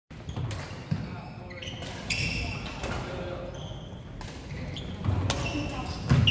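Badminton play on a wooden sports-hall court: several sharp racket strikes on the shuttlecock and short high squeaks of sneakers on the floor, over a murmur of voices.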